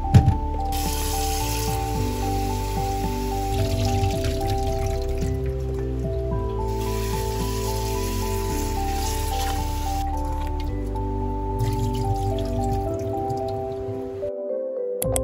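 Background music with a simple stepped melody, over a kitchen tap running into a stainless-steel bowl of strawberries in a steel sink. The water comes and goes in stretches.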